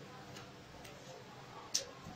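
A few faint, short clicks over quiet room tone, with one sharper click near the end.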